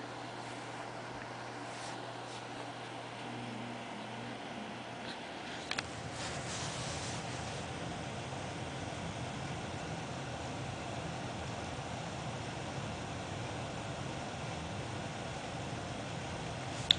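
Steady room background noise: a low hum with hiss, like a fan or air conditioner running. A brief click comes a little before six seconds in, and the hum is slightly louder after it.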